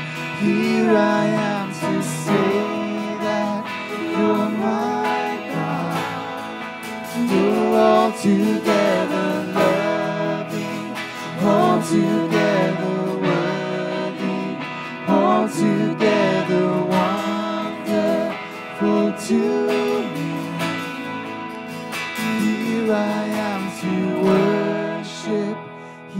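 Live worship band playing a song: a woman singing lead over strummed acoustic guitar, electric guitar and keyboard.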